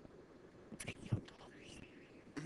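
Faint, indistinct voice, low speech or whispering, starting about a second in over quiet background hiss.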